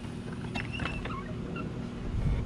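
A wooden fence gate being unlatched and swung open: a few sharp clicks of its metal latch and short squeaks, about half a second to a second in, over a steady low hum.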